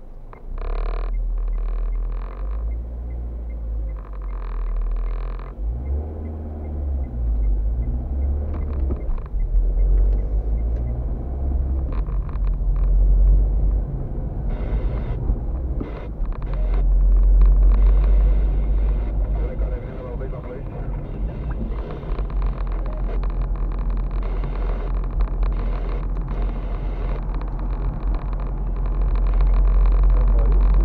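Car driving on a road, heard from inside the cabin: a steady low rumble of engine and tyres.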